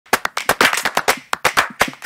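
A fast, uneven run of sharp clap-like hits, several every half second, making up the percussion of an edited intro soundtrack.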